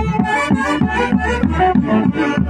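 Live Andean orquesta típica playing a Santiago dance tune: saxophones carry the melody over a steady bass-drum beat.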